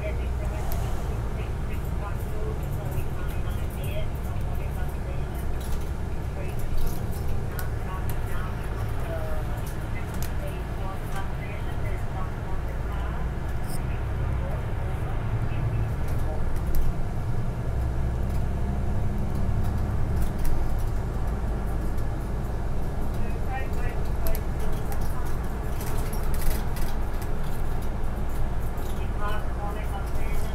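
City bus engine and road noise heard from inside the cabin near the front, a steady low rumble as the bus moves through traffic and drives along the road.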